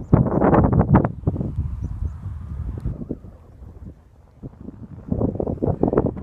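Wind buffeting the phone's microphone in irregular gusts. It is loud at first, drops to a lull around the middle, then gusts up again near the end.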